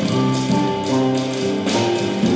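Small jazz combo playing live: drums keep a cymbal pattern of about three strokes a second over walking-bass lines, with held melody notes from the saxophone and piano chords.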